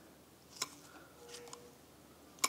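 A single sharp click about half a second in, then a few faint small clicks, from the throttle linkage of a Weber DCOE twin-choke carburettor being opened and let go by hand to work its acceleration pump.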